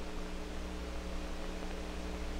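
Steady mains hum with hiss: the background noise of an old film soundtrack recording, with no other sound.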